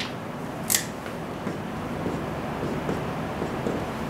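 A dry-erase marker drawing short tick marks on a whiteboard, light scratchy strokes, after a single sharp click about three-quarters of a second in.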